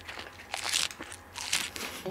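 Light crinkling and scraping from a plastic yogurt cup and its peeled-back foil lid being handled while a spoon scoops from it, a few scattered short crackles.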